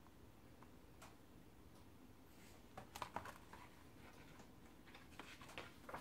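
Near silence with a few faint rustles and soft clicks as the pages of a picture book are handled and turned, once about halfway through and again near the end.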